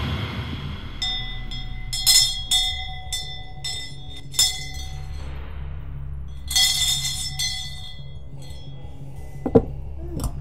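Brass handbell shaken in short irregular bursts, each stroke ringing on, over a low steady music drone.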